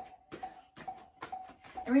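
Sneakered feet landing on the floor in a quick, even run of light thumps during jumping jacks.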